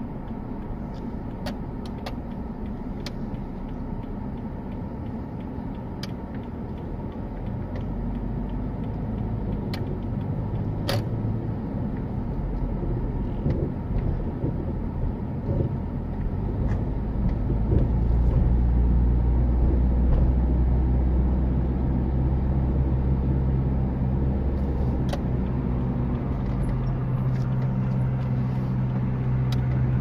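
Car engine and road noise heard from inside the cabin while driving, a steady low rumble that grows louder about halfway through as the road climbs. A few sharp clicks sound now and then.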